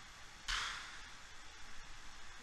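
A person blowing out a short puff of breath through pursed lips about half a second in, fading away within half a second, over faint room noise.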